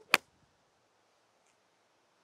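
A single sharp click of a TaylorMade nine iron striking a golf ball from a fairway bunker, a fraction of a second in, with a faint brief swish just before it: the ball picked off an upslope in the sand.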